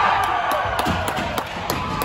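Spectators cheering and clapping in an ice rink, over music; the claps come roughly three a second.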